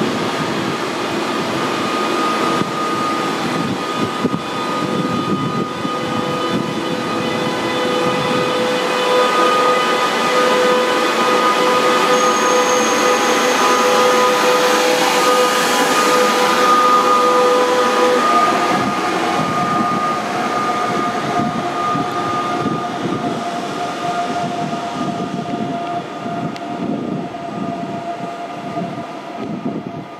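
A DB electric locomotive-hauled regional train moving past along the platform: steady rolling rumble with an electric whine of several steady tones, the lower of which jumps up in pitch about two-thirds of the way through. It is loudest in the middle, as the coaches pass close by.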